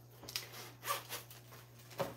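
Zipper on a zip-around wallet being pulled, heard as a few short, faint rasping strokes.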